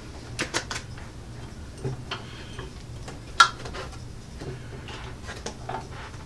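Scattered light clicks and knocks from a heavy-duty guillotine paper cutter as its presser foot (paper clamp) is wound back up and the cut pads are handled, with one sharper click about three and a half seconds in.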